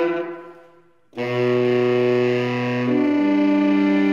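Two tenor saxophones playing held notes together: a sustained chord dies away over the first second, then both enter at once about a second in with loud long tones, one voice shifting to a new pitch near the three-second mark.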